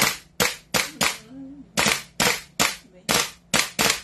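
Gas blowback airsoft M4 rifle (GBBR) firing single shots in three quick groups of three, each a sharp crack as the bolt blows back and gives the gun its kick.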